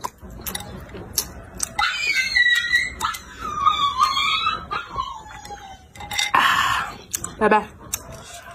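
Eating sounds: clicks of chopsticks against a ceramic bowl and a noisy slurp of chilli broth drunk from the bowl, past the middle. Over them, for about three seconds in the first half, a long, wavering, high-pitched animal whine falls in pitch.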